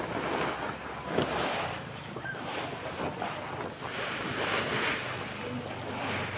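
A plastic drying tarp being lifted and folded over, rustling, while sun-dried palay grains slide across it in several swishing surges.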